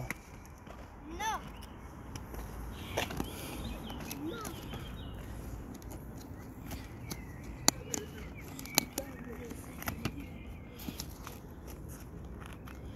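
Scattered sharp plastic clicks and handling sounds of inline skate buckles and straps being undone, with a short child's vocal sound about a second in.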